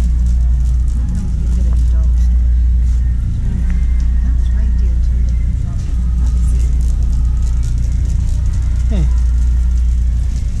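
Shopping cart rolling over a hard store floor: a steady low rumble with light rattling, under faint background voices.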